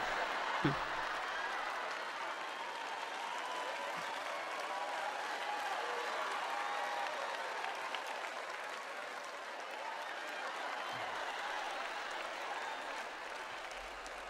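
A large audience applauding steadily, with faint voices mixed in.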